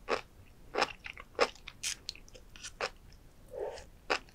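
Close-miked mouth chewing sea grapes (Caulerpa racemosa), the small seaweed beads bursting as sharp pops and crunches about every half second, with a softer, longer sound about three and a half seconds in.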